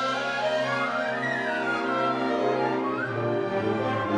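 Orchestra, bowed strings to the fore, playing a film-score cue: sustained string chords under a high line that climbs and falls about a second in, then climbs again near the end.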